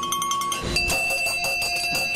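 Metal bells ringing. Quick clapper strikes come first, then about three-quarters of a second in a brass hand bell rings at a new, lower pitch and keeps ringing.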